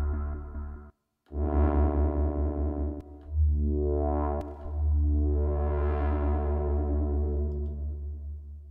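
Akai JURA software synthesizer playing sustained bass-heavy sweep presets, 'Random Sweeper' and then 'Res Sweep'. The filter opens and closes slowly, so each held sound grows brighter and then darker. The sound cuts off briefly about a second in, comes back with a new held note, and the last note fades out near the end.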